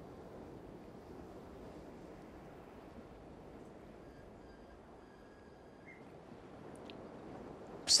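Quiet, steady background hiss, with a faint thin high tone for about two seconds midway and a small click near the end.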